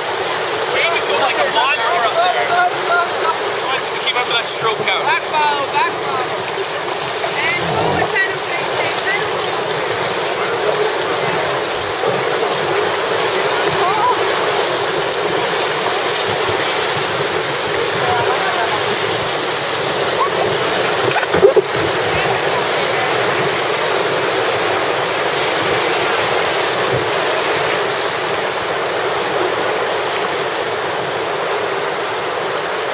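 Whitewater rapids rushing and churning around an inflatable raft, a loud steady noise of moving water. Faint indistinct voices come through in the first several seconds, and one brief sharp thump stands out about two-thirds of the way through.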